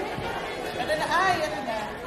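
Indistinct chatter of many voices talking at once in a large hall, with one voice louder about a second in.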